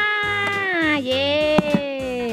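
Young children's voices in a long, drawn-out sing-song goodbye call. The pitch is held, then slides down about a second in and swoops up and down again.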